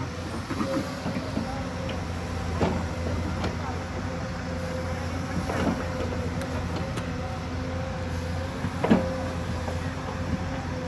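Hyundai crawler excavator's diesel engine running under load with a steady whine as the boom swings and the bucket digs into a dirt-and-rock bank. The bucket knocks and scrapes against the ground several times, the loudest knock about nine seconds in.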